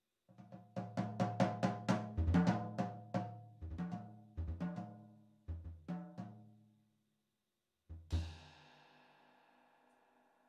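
Jazz drum kit solo: flurries of quick strokes on snare and toms, broken by short pauses, then a cymbal crash with bass drum about eight seconds in, left to ring out.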